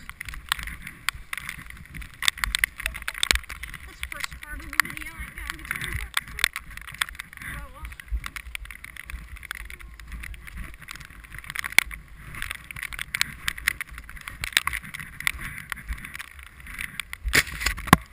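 Skis sliding over packed snow on a downhill run: a steady hiss with a low rumble and frequent sharp clicks and knocks, heard through a body-worn GoPro.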